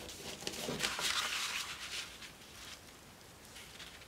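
Stiff kraft-paper pattern sheet rustling and sliding under the hands, a hissy rustle loudest about a second in, with a few light taps before it fades.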